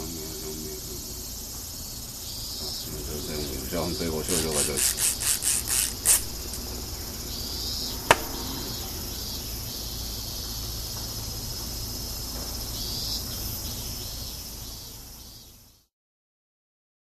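Steady high chirring of insects in a forest. A quick run of rasping strokes comes about four to six seconds in, the last one loudest, then a single sharp click about two seconds later. The sound fades out near the end.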